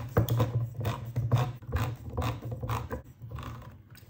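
Hand-held crank can opener turned around the rim of a tin can, its cutting wheel clicking as it cuts the lid, about two to three clicks a second.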